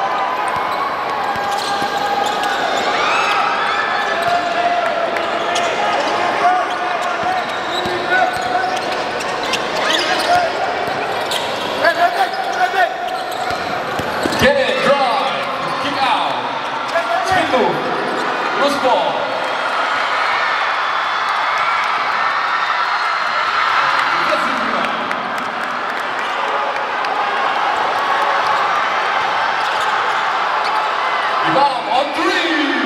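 A basketball being dribbled on a hardwood gym court during play, with voices in the hall throughout. A few sharp knocks stand out in the middle.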